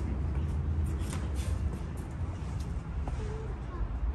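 Steady low rumble of wind on the microphone, with light sharp taps every half second or so from footsteps on stone paving.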